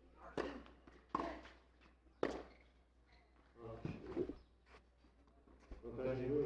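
Tennis rally: a ball struck by rackets three times, a second or so apart, then brief voices.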